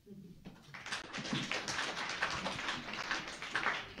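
Audience applauding lightly, beginning about a second in, right after a poem reading ends.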